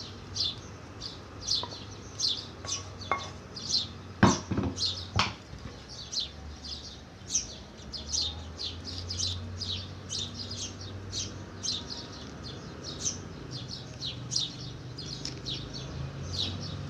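A small bird chirping over and over, about two short falling chirps a second. Two sharp knocks come about four and five seconds in.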